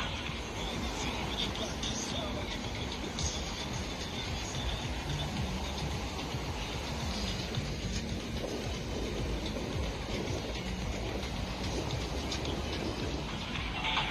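Steady rushing outdoor noise with faint music and voices underneath it.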